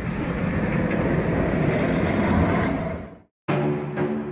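A sustained snare drum roll that swells slightly and breaks off about three seconds in. After a brief silence, deep pitched drum hits like timpani begin near the end.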